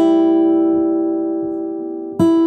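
An acoustic guitar chord, strummed once, rings out and slowly fades.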